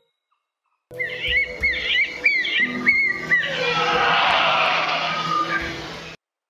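A New Zealand snipe's hakawai display call: a quick series of repeated chirping calls, then a loud rushing roar made by the tail feathers vibrating as the bird dives at high speed, swelling and then cut off.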